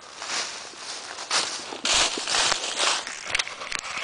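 Footsteps crunching through dry fallen leaves in an irregular string of crunches, with a few sharp clicks near the end.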